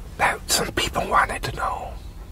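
A man speaking in a whisper, a few breathy words.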